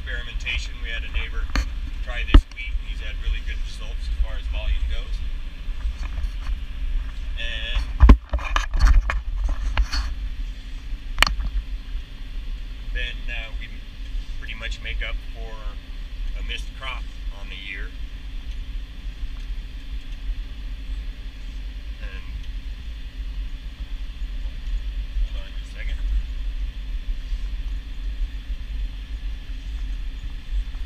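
Tractor engine running steadily under load, heard from inside the cab as a low rumble. Two sharp knocks come about two and eight seconds in.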